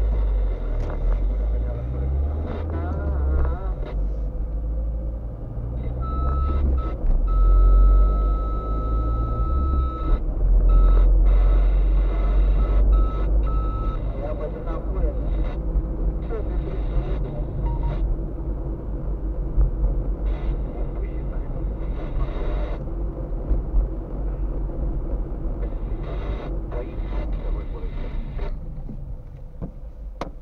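Car cabin sound of a car driving: engine and road rumble, heaviest at low pitch. From about six seconds in, a steady high beep sounds for about four seconds, then breaks into short repeated beeps that stop about fourteen seconds in.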